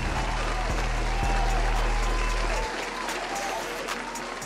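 Recorded crowd applause with cheering, a dense crackle of many hands clapping. It plays over a low steady tone that cuts off about two and a half seconds in.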